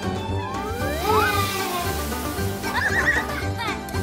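Background music with a steady beat, with rising whistle-like pitch glides about a second in and a short, wavering high-pitched squeal about three seconds in.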